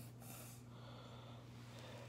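Faint breathy huffs: a quick pair of puffs of air in the first half second, then softer breaths, over a steady low hum.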